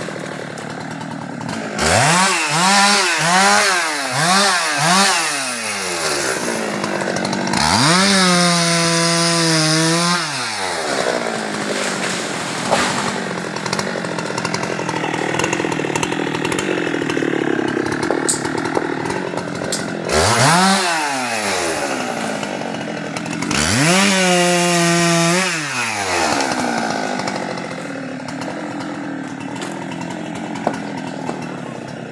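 Husqvarna 390 XP two-stroke chainsaw running and being revved: four quick throttle blips a couple of seconds in, then held at high speed for about three seconds. Later there is one short rev and another high-speed stretch of about two seconds, with the engine running lower in between.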